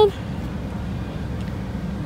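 A car running at idle: a steady low rumble, heard from inside the cabin with a rear door open.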